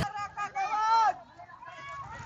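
A person's voice speaking or calling for about the first second, then a quieter stretch of background street noise.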